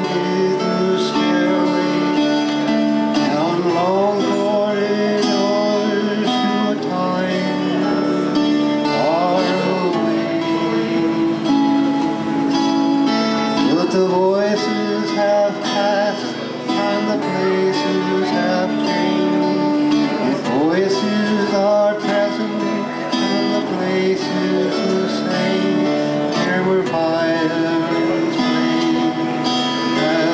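Acoustic guitar played continuously, chords ringing, with a man singing along in long phrases.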